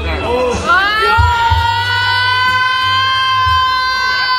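One voice holds a single long, high note, sliding up into it just under a second in and keeping it steady for about three seconds, over loud bar music with a heavy bass.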